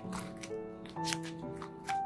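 Paper being handled as a notebook page with paper cut-outs is turned: several crisp rustles and crackles over background music with sustained notes.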